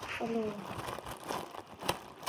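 Clear plastic packaging crinkling as it is handled, with scattered sharp crackles and a louder crackle near the end.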